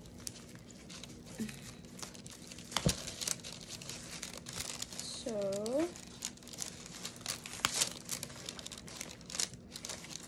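Paper wrapping crinkling and rustling as a small leather handbag with a paper-covered strap is handled and turned over. Scattered small clicks run through it, with one sharper click about three seconds in.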